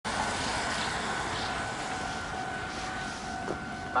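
A steady electronic tone held at one pitch, over a constant hiss of outdoor background noise.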